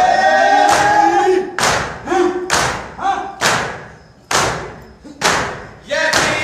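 A crowd of men beating their chests in unison (matam), a loud slap about once a second. Male voices chanting a noha together carry over the first second and a half and then drop away, leaving mostly the slaps.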